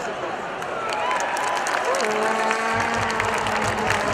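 Hockey arena crowd applauding and cheering, with scattered shouts and whistles. A steady low tone joins about halfway through, with a pulsing low thud beneath it shortly after.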